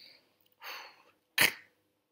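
A man pronouncing the Avar consonant кь, a lateral ejective affricate, on its own. A hiss of air comes about half a second in, then a single sharp burst a little past halfway, dying away quickly.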